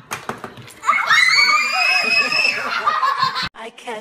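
A few clicks as a Pie Face game's spring-loaded arm flips up, then a loud, high-pitched scream of laughter held for about two and a half seconds that cuts off abruptly.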